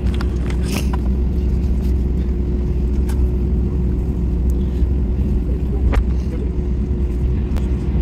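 Cabin noise of an Airbus A320 taxiing: a steady low rumble from the idling engines and the air system, with a constant hum and a few light knocks from the cabin as the aircraft rolls.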